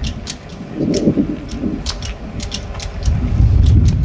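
Wind buffeting an open-air microphone: a low rumble that swells near the end, with scattered sharp clicks. A short laugh is heard about a second in.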